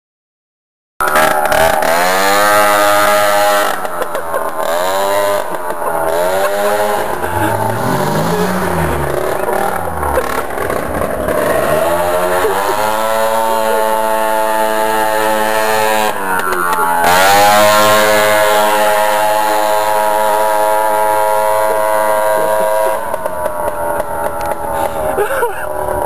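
Peugeot moped scooter engine running hard as it is ridden, its pitch rising and falling repeatedly as the throttle is opened and eased off, with some steady stretches at speed. The sound cuts in about a second in.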